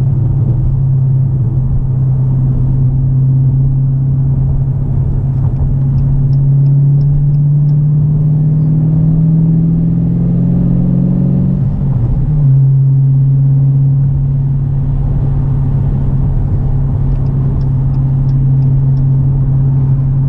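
Car engine and road noise heard inside the cabin while driving: a steady engine drone that climbs in pitch for a few seconds about halfway through, then drops suddenly as the transmission shifts up, and settles steady again.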